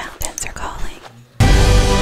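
Brief rustles and clicks of a backpack and headlamp being handled, then background music with sustained low notes cuts in suddenly about two-thirds of the way through and becomes the loudest sound.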